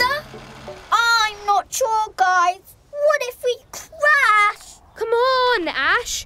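A high voice singing a children's cartoon song in short phrases with long held, bending notes. A short soft hiss comes just before the singing starts.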